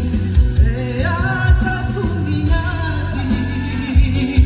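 A man sings a Wakatobi regional song into a microphone, amplified over a backing track with a steady bass beat.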